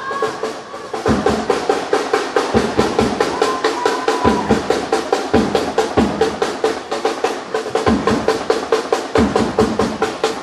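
Drum-heavy music with a fast, steady beat.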